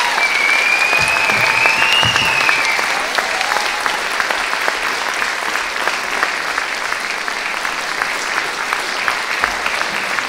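Audience applauding steadily, easing off a little over the seconds, with a high whistle over it during the first three seconds that rises slightly before fading.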